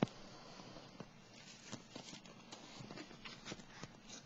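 Tarot cards handled on a wooden table: a sharp tap at the start, then a run of small clicks and light card noises as a new card is drawn and brought up.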